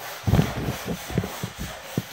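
Handling noise on a phone's microphone: irregular rubbing and soft knocks as a finger moves over the phone, the strongest knock about a third of a second in.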